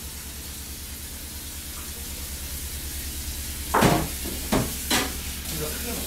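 Kitchen noise: a steady hiss over a low hum, slowly growing louder, with three sharp clanks about four to five seconds in.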